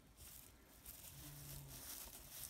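Near silence: room tone, with a faint, brief low hum a little over a second in.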